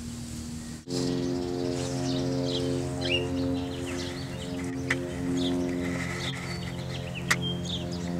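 Background music of slow, sustained chords starting suddenly about a second in, with short bird chirps above it.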